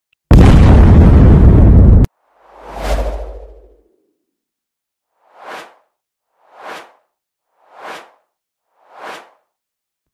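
Intro sound effects: a loud burst of noise lasting about two seconds that cuts off sharply, then a swelling whoosh over a low boom about three seconds in, followed by four short whooshes about 1.2 seconds apart.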